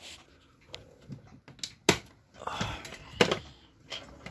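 Handling noise on a workbench: a few sharp clicks and knocks, the loudest just before two seconds in and just after three seconds, with brief rustling between them.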